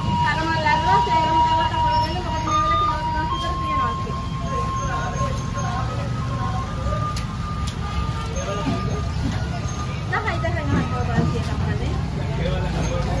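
Busy market background: people talking over a steady low engine rumble, with a long steady tone held for several seconds and two sharp knocks a little past the middle.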